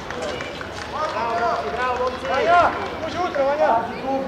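Several voices calling and shouting in short bursts across a football pitch, rising and falling in pitch, over a steady background hum of open-air noise.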